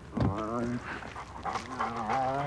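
A dog whimpering in two short, wavering whines, the first just after the start and the second near the end.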